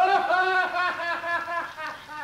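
A man laughing heartily in character as Toad: a rapid run of voiced "ha-ha" pulses that starts abruptly and tails off.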